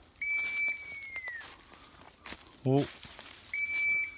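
A long whistled note, held level and then falling away at the end, heard twice: the first just after the start, lasting about a second, the second starting near the end. A handler's whistle to a pointing bird-dog pup.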